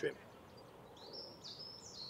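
A songbird chirping: a run of short high notes, some rising and some falling, starting about a second in, over faint steady background noise.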